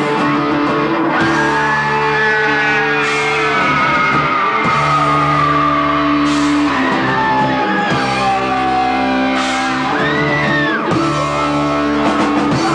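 Heavy metal band playing live: electric guitars hold chords that change every second or two, with a lead line sliding in pitch above them, over bass and a drum kit with cymbal crashes every few seconds.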